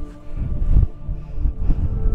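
Wind buffeting the microphone in uneven low gusts, over soft background music of sustained held tones.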